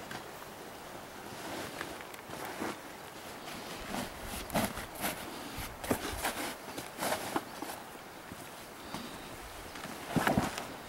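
Irregular rustling and light knocks from a canvas pack cover and pack-saddle gear being handled on a packed mule. A cluster of sharper knocks comes between about four and seven and a half seconds in.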